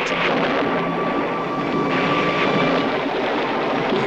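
Storm sound effect of heavy rain pouring, a steady rushing noise that holds at one level throughout.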